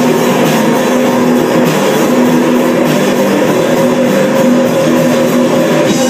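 Rock band playing an instrumental passage: electric guitar with bass and drums, loud and continuous, with sustained guitar notes.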